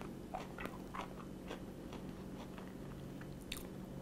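A man chewing a mouthful of sandwich, faint, with a few soft clicks and crunches from his mouth, over a faint steady low hum.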